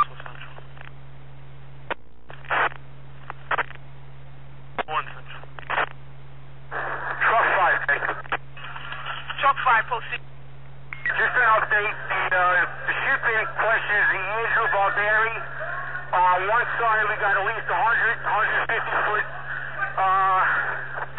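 Scanner radio traffic with a thin, narrow-band sound. Several brief bursts as transmissions key up and drop in the first few seconds, then steady, hard-to-make-out radio voice transmissions from about seven seconds in, all over a steady low hum.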